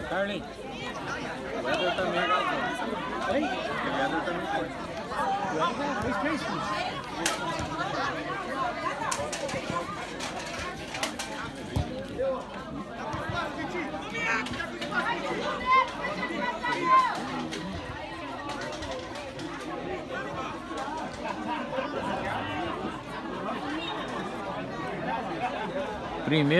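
Overlapping, untranscribed voices of players and onlookers calling out and chattering across a football pitch during play.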